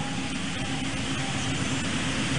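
Steady background hiss with a faint low hum, the recording's room tone between spoken phrases.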